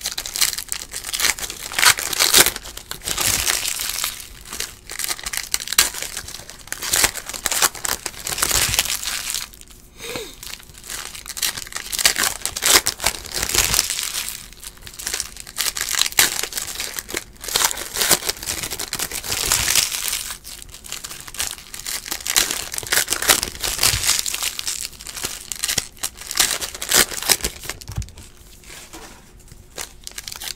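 Foil wrappers of Donruss Optic basketball card packs crinkling and tearing as packs are ripped open one after another, in dense bursts with a short lull about ten seconds in.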